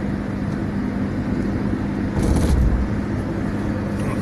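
Steady engine hum and tyre noise of a vehicle cruising on a highway. About two seconds in comes a brief low thump with a hiss.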